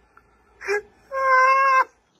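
Two high-pitched cries: a short one, then a louder, drawn-out one held at a steady pitch for most of a second.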